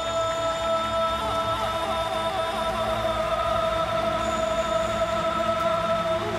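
Male singer holding one long high note into a microphone over instrumental backing.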